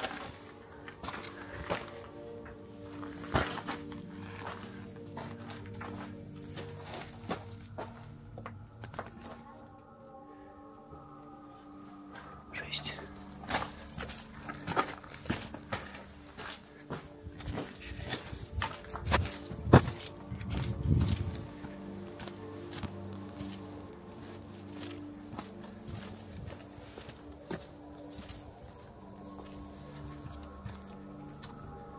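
Footsteps on concrete rubble and gravel, a scatter of short scrapes and knocks with the loudest about two-thirds of the way in, over background music of steady sustained tones.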